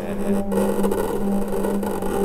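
Steady electronic drone from the performance's sound score: a held low hum with a gritty, noisy layer over it, briefly broken about half a second in.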